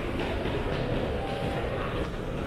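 Steady low rumble of an underground shopping arcade's background noise, even in level with no single sound standing out.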